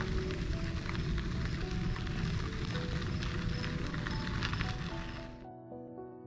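Bicycle tyres rolling over a rock-dust trail, a steady crackling crunch of fine grit, under soft background music. About five and a half seconds in, the tyre noise cuts off suddenly and only the piano-like music remains.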